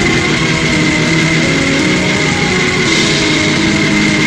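Heavily distorted, lo-fi raw black metal: a dense wall of fuzzed guitar noise with held chords that shift in pitch, steady and loud throughout.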